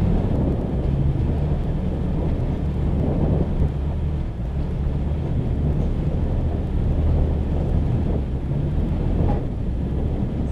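Low, steady rumble of a Toyota Tacoma pickup driving slowly over a rocky dirt trail: engine and tyres on gravel, with a couple of faint knocks near the end.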